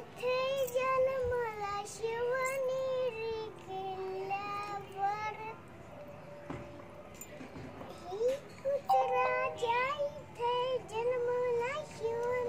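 A young girl singing a song alone, her voice moving in long held notes; she stops for about three seconds midway, then sings on.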